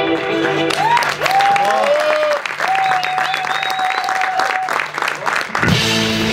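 Live audience applauding and cheering, with shouts rising and falling over the clapping and a steady low note held under it. About half a second before the end, a rock band starts up again with electric guitar and drums.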